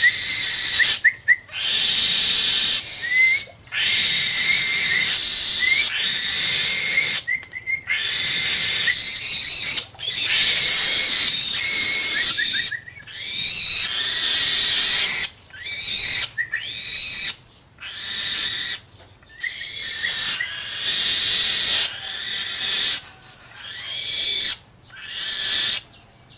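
Young falcon calling over and over in long harsh screeches, with short rising chirps scattered between them, typical of a hungry bird begging at feeding time.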